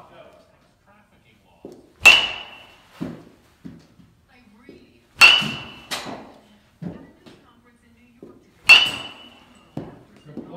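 A metal baseball bat hitting baseballs three times, about three and a half seconds apart, each hit a sharp ringing ping. Softer knocks follow as the balls land in the cage.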